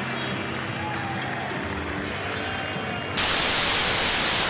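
Stadium crowd noise from a football match broadcast, then about three seconds in a sudden, much louder hiss of TV static that cuts in and holds steady.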